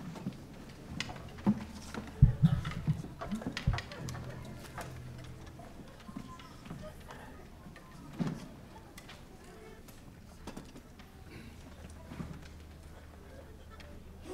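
Quiet stage between pieces: scattered knocks, clicks and rustles as the orchestra's players ready their instruments and stands. The loudest cluster of knocks comes two to four seconds in, over a low steady hum.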